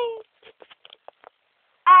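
The tail of a drawn-out, high-pitched character voice shouting "Yay!", falling slightly in pitch and fading out. A few faint clicks and a second of near quiet follow, then a sung "Off" begins near the end.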